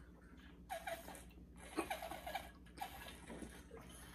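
A person drinking from a bottle, with groups of short gulps and swallowing clicks, the loudest about two seconds in.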